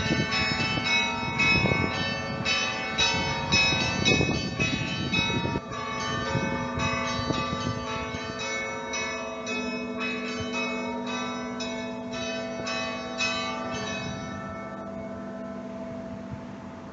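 Orthodox church bells rung together in a fast peal, many bells of different pitches struck in quick succession. The deep, heavy strokes stop about five seconds in, and the smaller bells go on more lightly until near the end, when the striking stops and the bells hum as they die away.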